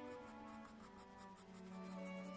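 Graphite pencil (Staedtler Mars Lumograph Black 4B) scratching faintly on sketch paper in a quick run of short, repeated strokes while shading fur texture, under soft background music.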